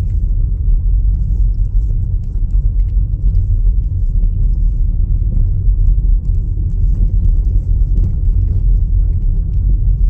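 Steady low rumble of a car driving on a dirt road, heard from inside the cabin, with faint scattered ticks over it.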